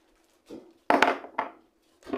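Two sharp knocks of kitchen things being handled on a countertop, the first about a second in and a lighter one half a second later.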